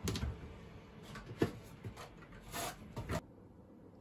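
Small kitchen handling sounds: a few short knocks and clicks, then brief crinkling rustles as a packaged bag of ground coffee is picked up, stopping a little before the end.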